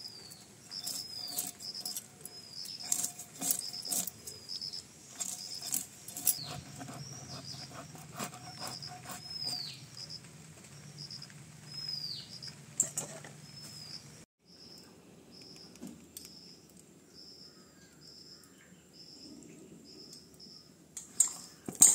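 A bird calling over and over, a short high chirp with a falling tail about once a second. Scattered sharp clicks and scrapes from a knife working on raw fish on a hard floor sound over the first two thirds.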